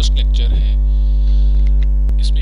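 Loud, steady electrical mains hum with a ladder of overtones, picked up by the recording.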